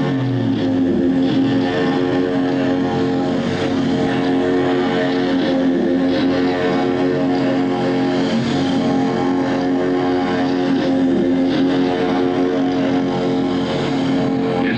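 Live electronic rock music over a stage PA: a sustained droning chord held on steady pitches with no drum beat, after a downward pitch slide in the first second.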